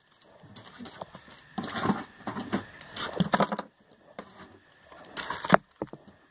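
Clear plastic packaging bag crinkling as it is handled, in three short bursts, with a sharp knock near the end as something is set down.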